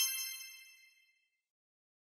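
Bright chime of a logo-sting sound effect ringing out, several high bell-like tones dying away within about a second.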